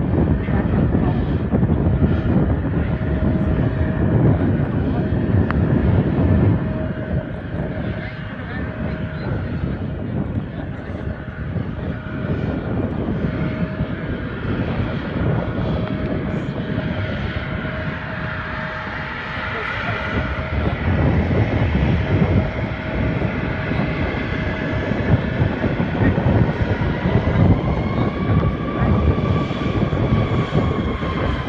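Bombardier CRJ700's twin rear-mounted General Electric CF34 turbofans running as the jet rolls along the runway after touchdown: a loud rumble with a steady whine, easing off after about six seconds and building again later, with a higher tone rising near the end.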